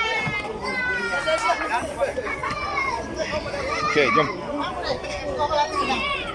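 A group of people talking and calling out, with children's high voices among them; a short 'okay, let's go' comes near the end.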